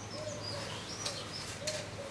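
Birds outside: a dove cooing over and over with short, low, arched notes, and a small bird chirping thinly above it. About two-thirds of the way through comes one short click.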